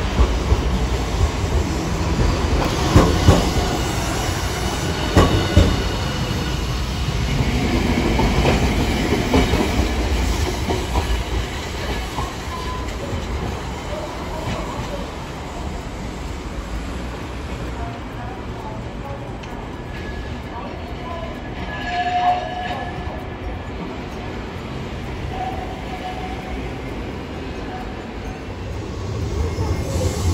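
Hiroden Green Mover LEX low-floor tram running past on a curve of street track, its wheels knocking sharply twice over rail joints and points. It fades into quieter street background, with a short tone about two-thirds of the way through.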